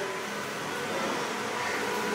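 Steady rumbling drone with no distinct events.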